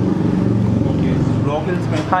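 Steady low motor hum, with a voice briefly heard near the end.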